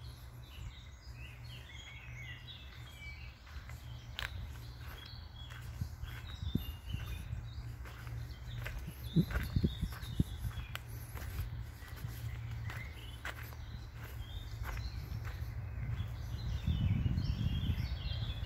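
Small birds chirping and singing among the trees, over a steady low rumble, with footsteps on twigs and leaf litter of the woodland floor; the loudest steps come about nine to ten seconds in.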